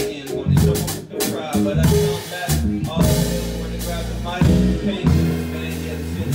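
Live band playing an instrumental stretch between rap verses: drum kit hits and cymbals over bass and chords. In the second half the low notes are held long.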